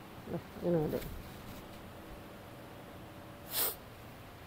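A short voice-like call that bends up and down, about half a second in, then a brief high hissing swish near the end.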